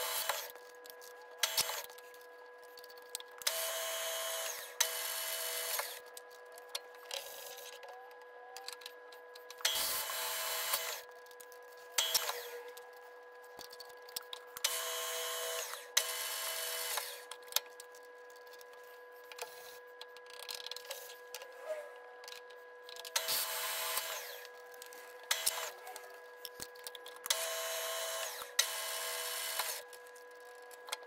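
Milling machine spindle running with a steady whine while a twist drill pecks into a metal plate: bursts of cutting noise of about a second each, often two in quick succession, recurring every several seconds, with a few short clicks between.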